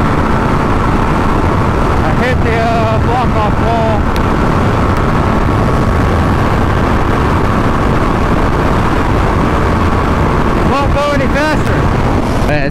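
Steady rush of wind on the microphone of a 2017 Yamaha FZ-09 at highway speed, with the bike's inline-three engine running evenly underneath.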